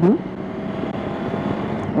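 Triumph Tiger 800 XRX's three-cylinder 800 cc engine running steadily under way, with wind and road noise.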